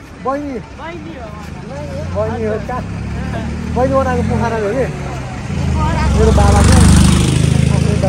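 A motor vehicle passing close along the street: a low rumble that builds up and is loudest about seven seconds in, then eases off, under people's voices.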